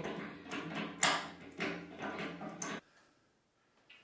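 Wrench loosening the old tub faucet's mounting nut: metal creaks and scrapes, about two strokes a second, which stop about three seconds in.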